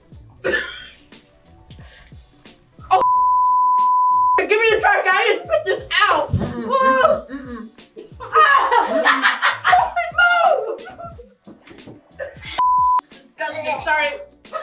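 A steady 1 kHz censor bleep, an edited-in tone masking a word, about a second and a half long some three seconds in, and a second short bleep near the end. Between and around them, several voices exclaiming and talking loudly.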